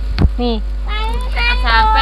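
Women talking over a steady low hum, with one sharp click about a quarter second in.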